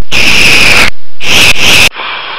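Loud, harsh hissing noise in two bursts, each cut off abruptly, the first a little under a second and the second shorter: a dubbed sound effect for a moving clay blob.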